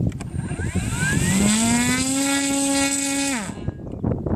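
Electric motor and propeller of a large RC scale glider spinning up with a rising whine, holding a steady pitch for about a second, then cut off sharply so the pitch drops away. The model stays on its launch trolley, so this is a run-up on the ground.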